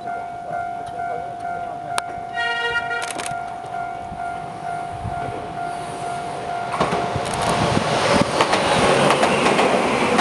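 Shizuoka Railway electric train sounding one short blast on its horn about two and a half seconds in, a warning to track maintenance workers near the line. From about seven seconds the train passes close by, its wheels clattering over the rails and growing loud; a steady tone is heard underneath until the train arrives.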